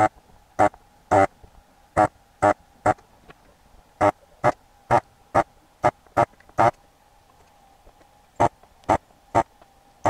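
Electric vacuum desoldering gun's pump buzzing in short bursts, about fifteen quick trigger pulls in runs of two to seven, sucking the solder off a ribbon-cable connector's pins on a circuit board, over a faint steady hum.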